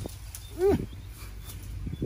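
A man's single short strained vocal exclamation about half a second in, rising then falling in pitch, as he heaves at a gelam sapling to pull it out by the roots.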